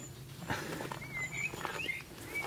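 A bird chirping outside: a few short whistled notes about a second in and again near the end, over faint ticks and a steady low hum.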